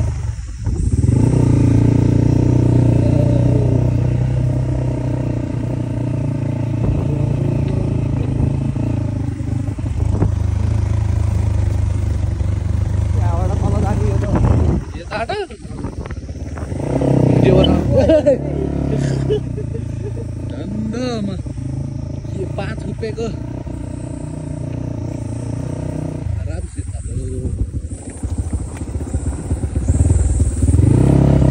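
A motor vehicle engine running steadily with a low rumble, with indistinct voices over it. The level dips briefly about halfway through.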